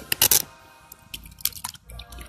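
Background music with steady held tones, broken by sharp splashes and knocks from a perch being handled at the water's surface and let back into the river. The loudest is a quick cluster of splashes shortly after the start, with a few more around the middle.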